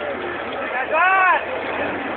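A single high-pitched wordless shout that rises and falls in pitch, about a second in, over the steady noise of the Jeep Cherokee's engine working on the climb.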